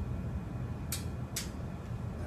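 Two sharp little clicks about half a second apart, the first about a second in, from switches or controls on the tabletop equipment being handled. Steady low room rumble underneath.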